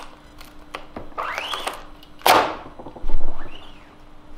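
Screen-printing squeegee dragged across the ink-flooded mesh screen, giving short scraping strokes that rise and fall in pitch. There is a sharp knock about halfway through and a heavy thud just after, from the squeegee and wooden frame being handled on the press.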